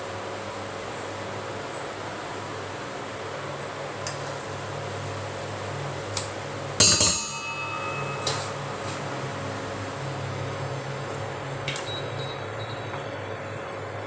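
Metal spoon stirring and scraping a crumbly mixture in a nonstick frying pan on an induction cooktop, with small scattered clicks over a steady low hum. About seven seconds in, the spoon strikes the pan with one loud metallic clink that rings briefly.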